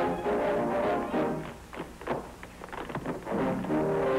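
Old film-soundtrack orchestral dance music led by brass chords. It drops to a quieter stretch in the middle with a few sharp clicks, then comes back at full strength near the end.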